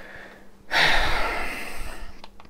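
A person's loud breath out close to the microphone: a breathy rush that starts a little under a second in and fades over about a second.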